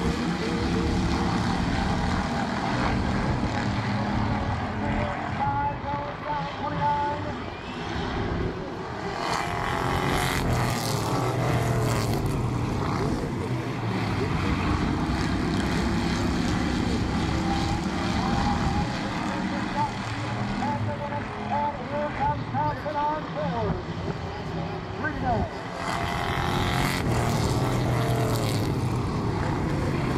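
A pack of street stock race cars running at racing speed around the oval, their engines rising and falling in loudness as the pack comes around and moves away, twice dipping quieter for a few seconds.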